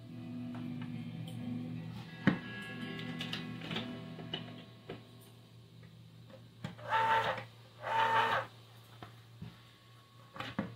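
Background music with plucked-guitar tones, a sharp knock about two seconds in, then an electric can opener's motor whirring in two short bursts about a second apart near the end.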